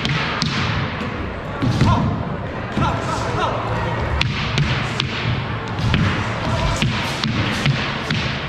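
Wushu staff routine on a hardwood gym floor: irregular sharp knocks and thuds from the staff and stamping feet over steady crowd chatter in a large gymnasium.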